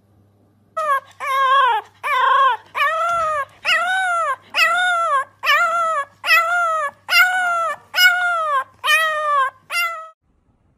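An animal calling in a series of about eleven short, high-pitched cries, each rising and falling in pitch, roughly one a second, cut off suddenly at the end.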